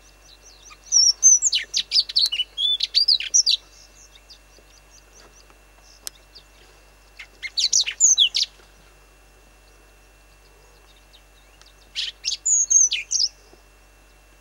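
A sabota lark singing three bursts of quick, varied high chirps and whistles, each one to two and a half seconds long, with pauses of a few seconds between them.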